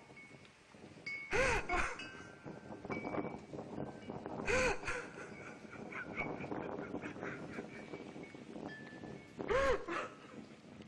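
A man's wordless, overwhelmed cries of awe: three drawn-out wails, each rising and then falling in pitch, about one and a half, four and a half and nine and a half seconds in. They are played back over a hall's loudspeakers.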